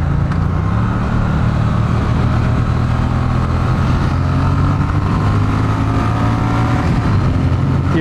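Triumph T100 Bonneville's parallel-twin engine pulling hard in a roll-on acceleration, its pitch rising slowly and steadily, over road and wind noise.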